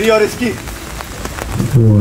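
Steady rain falling on an outdoor set, with voices speaking in Hindi briefly at the start and loudly near the end.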